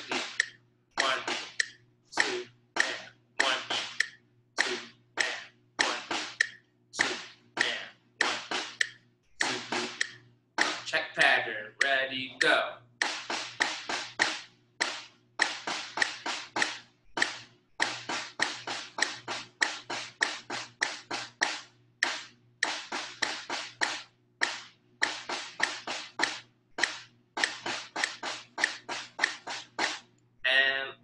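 Snare drum played with sticks: a steady run of sharp strokes in sixteenth- and eighth-note rhythms, grouped into short phrases with brief gaps, working through a check pattern alternating with written rhythm lines.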